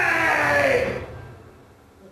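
A man's long, drawn-out cry, held on one pitch and then sliding down and dying away about a second in.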